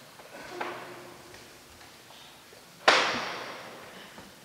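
A single sharp knock about three seconds in, echoing away over a second or so, after a fainter knock near the start, over quiet room tone.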